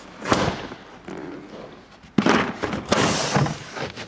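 Pop-up tackle-box storage rack in a bass boat deck being pushed back down into its track: a light knock near the start, then a louder thump a little over two seconds in, with noise trailing for about a second.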